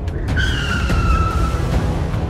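Car tyres squealing in one long, slightly falling screech as a car takes off hard, over music with a heavy low rumble.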